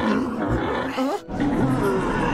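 A creature's growling roar over dramatic background music. It breaks off briefly just past a second in, then starts again.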